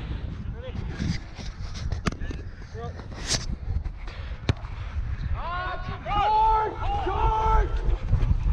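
Wind rumbling on a body-worn action camera's microphone, with a sharp knock about halfway through as a rugby ball is kicked. In the second half, players shout calls across the pitch.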